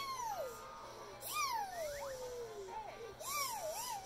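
A young child's high, wordless singing voice, sliding up and down in pitch, with one long falling note in the middle.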